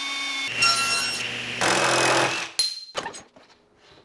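Power tools running in quick succession. First a Ridgid cordless drill whines steadily as it bores through plywood, then the tool sound changes, with a louder, noisier stretch from about a second and a half to two and a half seconds in. Near the end only faint clicks remain.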